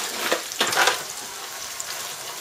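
Chicken wings tossed by hand in a butter-and-spice sauce in a foil pan, with a few wet squelches and scrapes in the first second. Under it runs a steady sizzle of oil frying in a pot.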